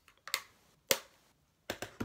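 Two sharp clicks about half a second apart, then a few lighter clicks near the end: hard makeup cases and tools being picked up and handled on a tabletop.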